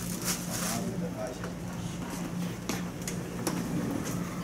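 Indoor room noise: a steady low hum with faint, indistinct voices and a few brief clicks scattered through.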